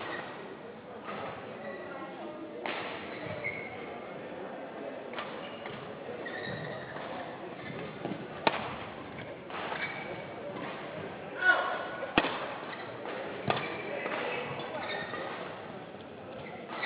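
Badminton rally: rackets striking a shuttlecock, a few sharp hits, the clearest about 8.5 and 12 seconds in.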